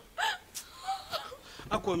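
A few short, frightened vocal sounds, gasping and whimpering, one with a falling pitch about a quarter second in.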